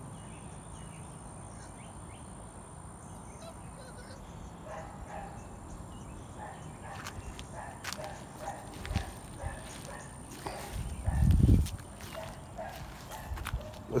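Young puppies whimpering and yipping in short, faint calls, with scattered clicks and rattles. Near the end comes a brief, loud, low thump.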